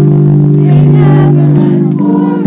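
A choir singing a Christmas carol, loud and close, holding long steady notes in chords.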